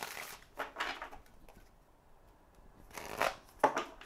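A tarot deck riffle-shuffled by hand and bridged, the cards fluttering and cascading in short rustling bursts near the start and again near the end, with a quiet pause in between.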